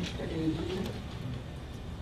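A faint, off-microphone voice murmuring briefly in the first second, over steady room noise.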